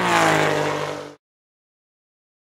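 An engine revved and falling in pitch as it drops back, loud from the start, then cut off abruptly a little over a second in.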